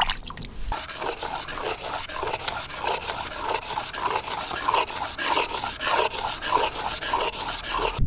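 A piece of argillite ground by hand on a sandstone slab: a gritty scraping in quick, even back-and-forth strokes as the soft stone's high spots are worn down.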